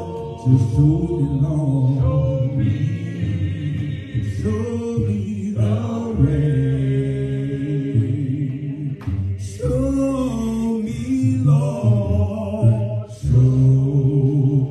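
Unaccompanied (a cappella) worship singing, a man's voice held in long, wavering notes through a microphone, with more voices beneath it.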